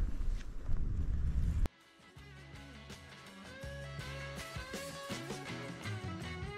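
Wind buffeting the microphone as a low rumble for under two seconds, cut off suddenly. Background music follows: a plucked guitar tune over a steady bass.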